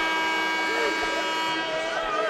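A gym's electronic scoreboard horn sounding one steady blast that cuts off suddenly about one and a half seconds in, over crowd murmur.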